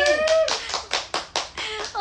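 A person clapping her hands in a quick run of about eight claps, starting about half a second in.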